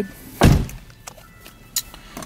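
A single dull thump inside a car cabin about half a second in, then quiet, with a faint click near the end.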